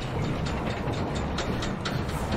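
A low, steady rumbling drone with faint ticks, typical of a dramatic underscore or ambient sound bed between lines of dialogue.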